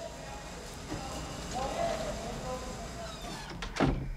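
An office door pulled shut with a single sharp bang near the end, over a low steady background.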